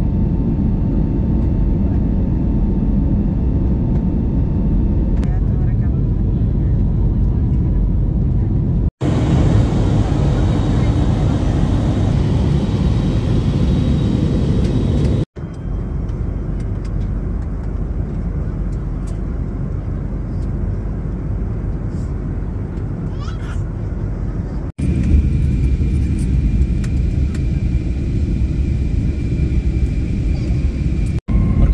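Jet airliner cabin noise heard from a window seat: a steady, low, heavy noise of turbofan engines and airflow. It cuts out abruptly three times and resumes at a slightly different level each time.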